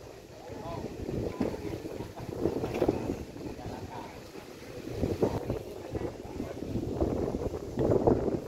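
Wind buffeting the microphone in uneven gusts, a rumbling outdoor noise that rises and falls throughout.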